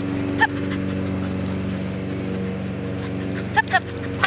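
A steady low drone from a running motor, with short, sharp, high-pitched chirps: one about half a second in and a quick pair near the end.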